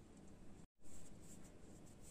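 Faint scraping of a silicone spatula stirring thick tahini in a stainless steel pot, broken by a moment of total silence a little before the middle.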